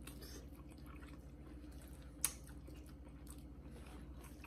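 Faint chewing and mouth sounds of people eating noodles, over a low steady hum, with one sharp click a little after halfway through.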